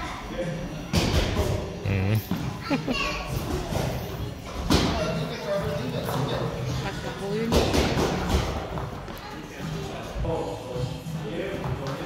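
Children's voices chattering and calling out in a large hall, broken by several sharp thuds, the loudest about a second in, near five seconds and near eight seconds.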